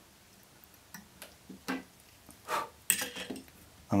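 A few scattered small clicks and ticks from fly-tying tools at the vise as the tying thread is finished off, with a sharper click about three seconds in.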